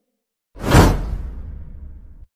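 Whoosh transition sound effect: a sudden rush about half a second in, loudest almost at once, then fading over about a second and a half with a low rumble underneath.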